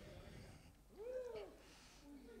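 A brief, faint sound from a person's voice about a second in, like a short 'ooh', rising and then falling in pitch.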